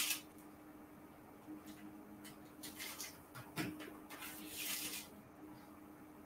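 Faint, scattered taps and scrapes of a knife blade cutting through layered cookie dough on parchment, over a faint steady hum.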